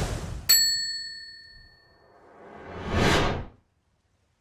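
Logo sting sound effects: a short whoosh, then a bright bell-like ding about half a second in that rings out and fades over a second or so. A second whoosh then swells up and cuts off suddenly near the end.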